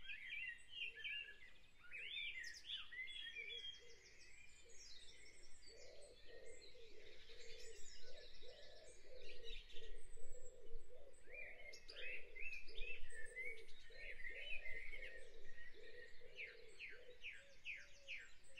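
Dawn chorus recording: many birds chirping and singing at once, faint, with a lower repeated call running through the middle.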